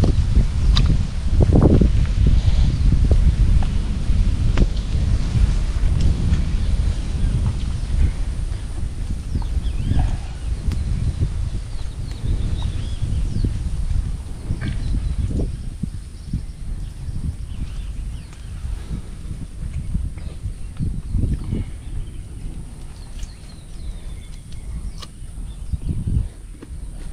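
Long low rumble of rolling thunder from an approaching storm, loudest at first and slowly dying away, with a few faint clicks over it.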